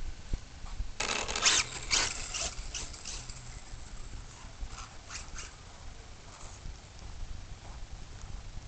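Brushless electric RC buggy pulling away and driving across grass: a burst of tyre and drivetrain noise about a second in, then fainter scattered scuffs and clicks.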